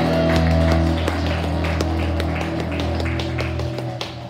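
Rock band with electric guitars and bass holding a sustained chord that rings out, the low bass tone dropping away shortly before the end. A scatter of short sharp taps sounds over it.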